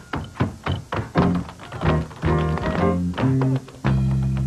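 Tap shoes striking pavement in quick, syncopated rhythms over a jazz swing band track. Near the end the taps thin out and long, held low notes from the band take over.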